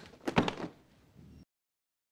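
A quick cluster of sharp bangs about a quarter second in, with a short tail after them. A faint low sound follows, then the sound cuts off to dead silence about one and a half seconds in.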